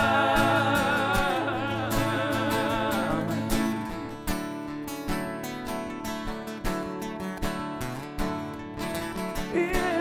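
A live band playing country-pop: a sung note held with vibrato fades over the first three seconds, then acoustic guitar strumming carries on with the band.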